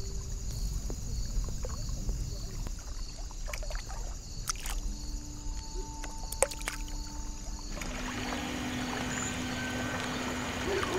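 Lake water lapping and gently splashing around a swimmer floating on her back, with small drip and splash clicks over a low wash of water. A few soft held tones run underneath, and about eight seconds in the background turns to a brighter, fuller hiss.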